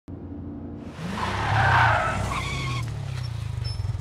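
A car running with its tyres screeching, the screech swelling to its loudest about two seconds in and fading into a low engine rumble.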